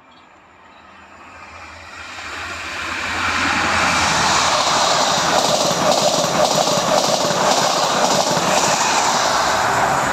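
CrossCountry passenger train running through the station at speed. The sound builds over about three seconds to a loud, steady rush of wheels on rail, with a regular beat as each wheelset passes.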